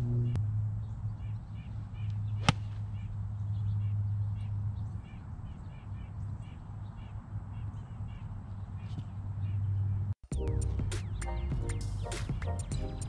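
A single crisp strike of a Ping Eye2 pitching wedge on a golf ball, a knockdown shot, about two and a half seconds in, over a steady low hum. Near the end the sound cuts briefly and background music comes in.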